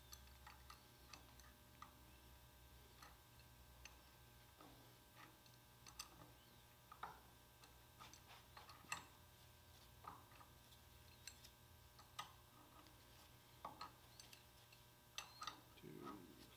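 Faint, irregular metallic clicks of a wrench turning the ram bolts on a stuffing box's poor boy BOP, tightened in even turns, over a low steady hum.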